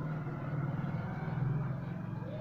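A steady low engine hum with no speech over it.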